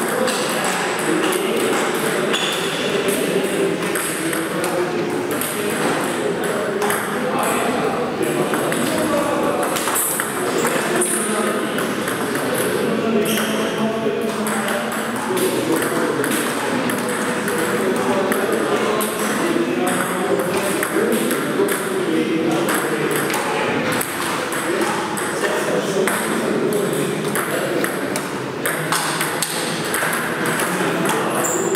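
Table tennis rallies: the ball clicking off paddles and bouncing on the table in quick exchanges, with short breaks between points.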